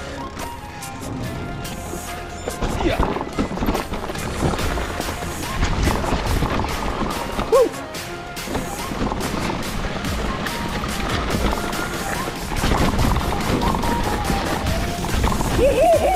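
Mountain bike riding down a dirt forest trail: steady rush of tyre and wind noise with many small clicks and rattles from the bike, under background music.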